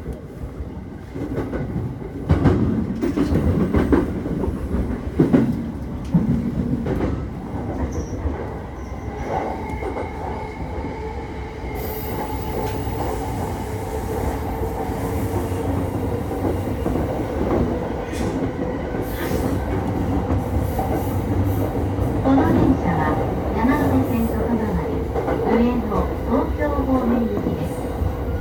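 Yamanote Line electric commuter train running between stations, heard from just behind the driver's cab: continuous rumble and clatter of the wheels on the rails, with squealing from the wheels on the curves. A steady whine comes in about ten seconds in.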